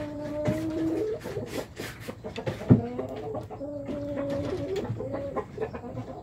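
Young chickens calling with drawn-out, repeated clucking notes, several in a row, with a few sharp knocks among them.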